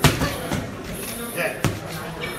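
Boxing gloves striking focus mitts: three sharp slaps, loud ones at the start and near the end with a lighter one about half a second in.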